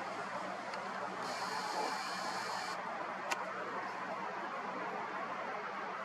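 Steady outdoor background hiss with a faint hum, and a camera lens zoom motor whirring for about a second and a half starting about a second in, followed by a single sharp click.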